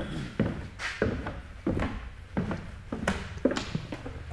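Footsteps of several people walking on a bare concrete floor, a quick, uneven run of steps.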